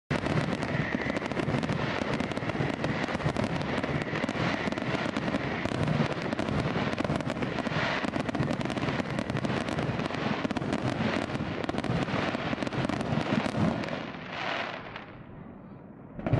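Fireworks display: a dense, continuous barrage of bangs and crackling that thins out and fades away near the end.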